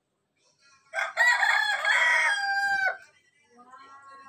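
A rooster crowing once. It is a single loud, long call starting about a second in, held for about two seconds, and it ends in a short downward slide.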